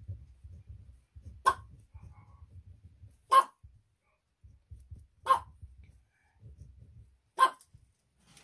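A dog barking four times, single short barks about two seconds apart.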